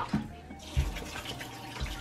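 Water splashing in a sink as cleanser is rinsed off a face with cupped hands, over background music.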